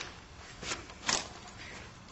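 Two light clicks about half a second apart, the second a little louder, as a chert preform and a punch are handled between strikes.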